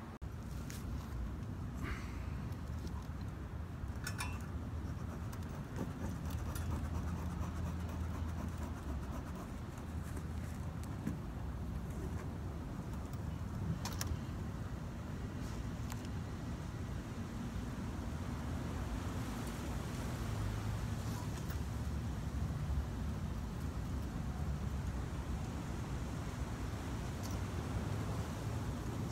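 A cardboard box being handled, with a few sharp clicks and rustles, over a steady low outdoor rumble.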